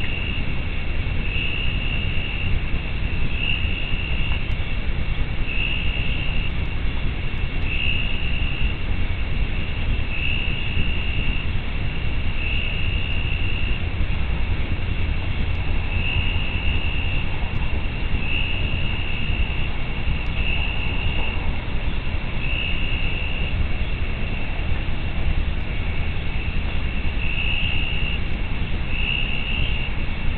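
Night insects calling: a high, pulsing chirr repeats about every two seconds over a steady high drone, above a constant low rumble.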